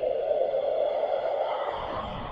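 Cinematic sound-design swell: a dense, noisy whoosh held in the middle register, with a low rumble coming in near the end.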